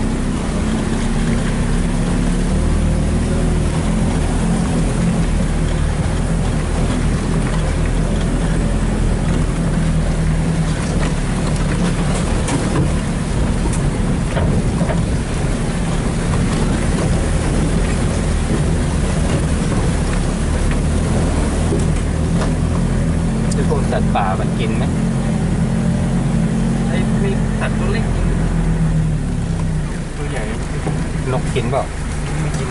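A vehicle engine running steadily under load, heard from inside the cab as it drives over a rough, wet forest track, with a low, even drone and occasional short knocks and rattles.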